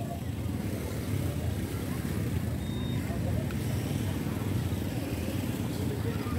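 Motorbike engines running and passing close by on a crowded street, a steady low rumble, with background voices.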